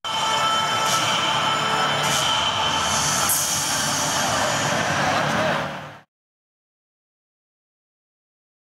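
Steady ambient noise of a busy public hall, a mechanical rumble with a faint high whine over background bustle, fading out about five and a half seconds in.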